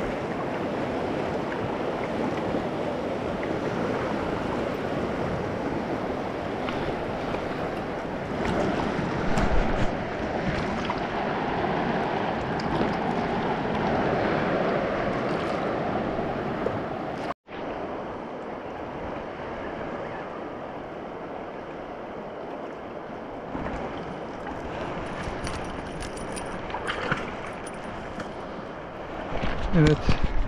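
Fast mountain river rushing over rapids, a steady roar of water. It breaks off suddenly about 17 seconds in and carries on a little quieter afterwards.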